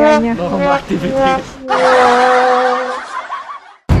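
A boy laughing, then a steady held tone over a rushing hiss for about a second and a half that fades out and breaks off just before the end.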